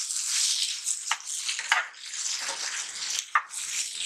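Diced bottle gourd sizzling in hot oil and masala in a pan while a spatula stirs and turns the pieces. The sizzle rises and falls in waves with each stir, with a few sharp scrapes or taps of the spatula on the pan.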